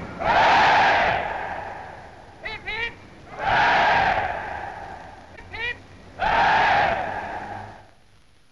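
A battalion of Grenadier Guards on parade giving three cheers: each time a single voice calls a short 'hip, hip' and the ranks answer with a loud shouted 'hooray' lasting about a second. It happens three times, about three seconds apart.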